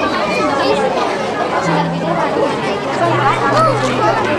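Many children's voices chattering at once, with music playing underneath: low bass notes held and changing every second or so.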